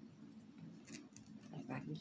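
Faint clicks and rustles of small plastic parts being handled: a diamond-painting drill pen having a grip fitted onto it.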